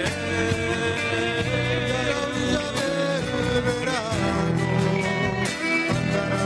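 A live band playing: acoustic and electric guitars, electric bass and drums, with a melody running over a steady beat.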